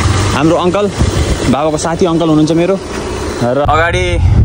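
A person talking, with a low background rumble. Shortly before the end the sound cuts abruptly to the steady low hum of a car's cabin.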